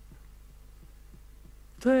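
A pause in speech with only a faint, steady low electrical hum, then a man starts speaking again near the end.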